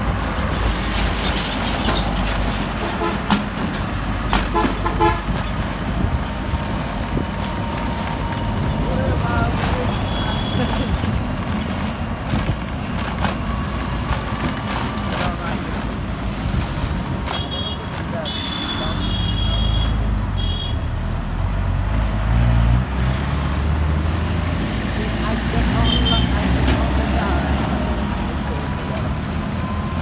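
Road traffic: bus and motorcycle engines running steadily, with a heavier engine rumbling louder about two-thirds of the way in. Short vehicle horn beeps sound once around a third of the way through, in a cluster of several beeps in the middle, and as a pair near the end.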